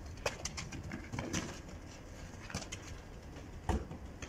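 Rubber football being kicked and dribbled on hard dirt ground, with scuffing feet: a handful of sharp knocks spread through, the loudest near the end.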